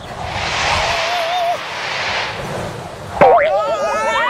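A gust of wind sound effect whooshes for about two and a half seconds, with a short wavering squeak over it. About three seconds in, a sharp rising squeak breaks into a fast wobble, like a boing: Sweep's squeaky puppet voice.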